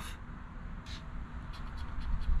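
A coin scraping the scratch-off coating on a lottery ticket, a brief scrape about a second in over a faint steady hiss.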